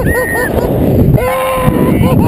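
Riders on a snow tube sliding fast down a snow hill: heavy rumbling wind and sliding noise on the camera microphone, with a rider's short yelps at the start and one long held whoop a little over a second in.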